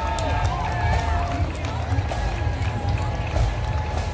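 Parade crowd voices and chatter over a marching band playing, with held brass notes and drum hits.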